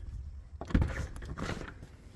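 A house's back door being opened and shut: a knock about three-quarters of a second in, then a brief scraping rattle.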